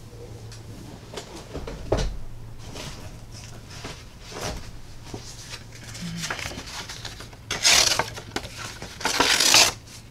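Scattered light clicks and a knock of craft supplies being handled, then two loud rustles of a sheet of paper, about a second each, near the end as the paper is picked up and handled.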